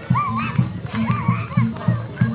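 Barongan procession music: a steady low beat of several strokes a second with a high wavering melody over it.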